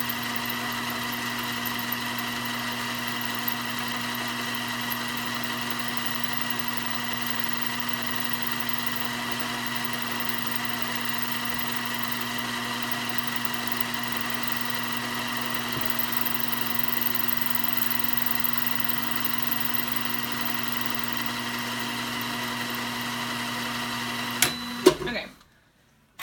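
Sailrite 111 industrial sewing machine running at full speed to drive its bobbin winder: a steady hum with a light squeak, which she thinks needs a little oil. Near the end it stops suddenly with a couple of sharp clicks as the full bobbin is done.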